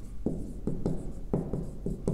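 Marker pen writing on a whiteboard: a quick, irregular series of short strokes and taps as characters are written.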